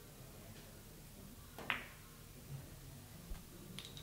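A billiard shot on a five-pin (skomar) carom table: one sharp click of cue and ball about halfway through, followed by a few fainter clicks and a dull knock as the balls roll on and collide.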